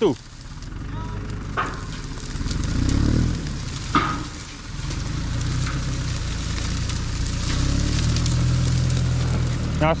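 Small farm tractor's engine running steadily at low speed while it tows a camelback ditch pump, with a couple of sharp knocks about one and a half and four seconds in.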